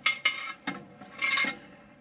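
Metal clinks and rattles from a Lippert Solid Stance step stabilizer as its locking pins are pulled and its metal leg knocks against the aluminum step: a ringing clink at the start, a small click, then a longer ringing rattle about a second and a half in.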